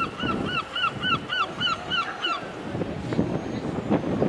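A bird calling in a rapid run of short rising-and-falling notes, about five a second, that stops a little over two seconds in.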